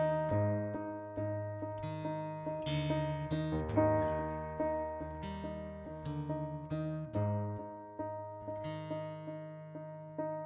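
Instrumental intro of a song on a Roland stage keyboard with a piano sound and an acoustic guitar, with no singing. Single notes start sharply and fade over low bass notes that change about once a second.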